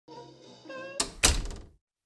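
Soft pitched notes stepping upward, then about a second in two heavy thuds, the second louder, each ringing off briefly. These are intro sound effects before a song begins.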